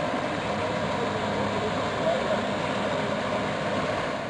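Outboard motor of an inflatable rescue boat running steadily under way, a constant engine sound mixed with even hiss.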